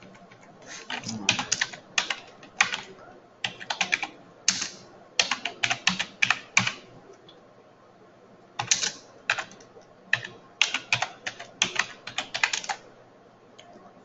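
Computer keyboard being typed on: three runs of quick key clicks with short pauses between them, the longest pause about halfway through.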